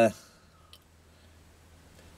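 The end of a drawn-out spoken 'uh', then a near-quiet room with a faint low hum and a single faint computer-mouse click about three-quarters of a second in, as a news page is scrolled.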